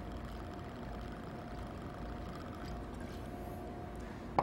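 Dry gin pouring steadily from a bottle into a highball glass, a quiet, even stream.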